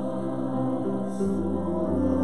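Mixed-voice church choir singing an anthem in sustained chords, with a deep low note joining a little after a second in.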